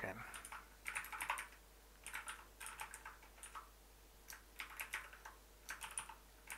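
Typing on a computer keyboard in several short runs of keystrokes, with brief pauses between them.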